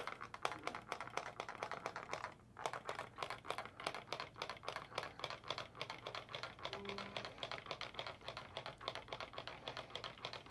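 Hand-held trigger spray bottle pumped in quick, light, partial trigger pulls, a rapid run of clicks and spritzes of isopropyl alcohol onto wet epoxy, with a short pause about two and a half seconds in. The light trigger pulls give large and small drops, which break the colours of the pour into circles.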